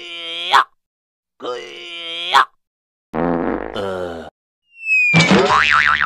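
Cartoon-style comedy sound effects dubbed over the picture, with no natural background between them. Two short rising boing-like tones are followed by another pitched effect over a low hum. Near the end a short falling whistle gives way to a wavering pitched cry.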